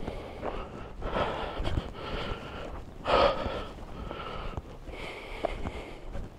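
A man breathing audibly through a sore, very dry throat, about four noisy breaths with the loudest about three seconds in.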